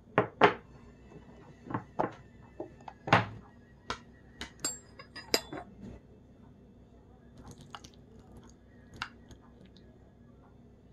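Kitchen utensils knocking and clinking against dishes: a run of sharp taps and clinks, some of them ringing briefly, through the first six seconds, then only a few faint ones.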